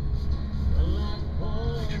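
Low engine and road rumble inside a vehicle's cab as it slowly turns in off the road, with music playing over it.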